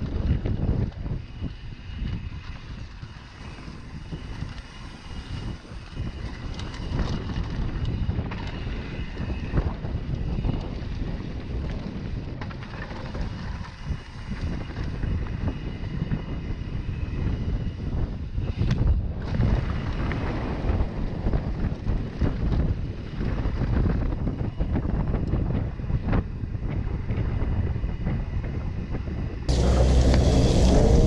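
Wind buffeting the microphone of a camera riding down a dirt mountain-bike trail, with the rumble and knocks of the bike over bumps. Near the end it cuts suddenly to a louder, brighter sound.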